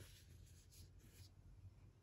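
Faint rustle of a cardboard vinyl LP jacket sliding through the hands as it is turned over and laid down, dying away after about a second. After that there is near silence with a low room hum.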